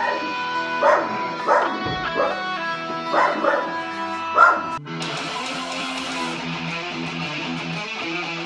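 Electric guitar notes ringing while a dog barks several times over them, the loudest bark about four and a half seconds in. Near five seconds it changes abruptly to distorted electric guitar playing.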